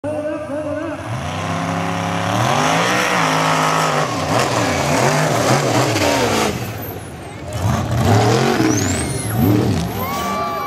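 Stroked 6.0 Powerstroke turbo-diesel V8 in a Ford mud truck revving hard, its pitch climbing, holding and dropping over and over as the throttle is worked. A high rising whistle comes in near the end.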